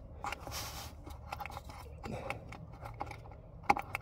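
Screwdriver tip faintly scraping and clicking in a blocked sunroof drain outlet as it prods out packed gunk and debris, with a sharper click near the end.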